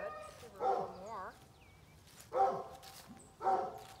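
A muzzled dog whining and moaning in three short, wavering bouts: a protest at wearing the muzzle for the first time.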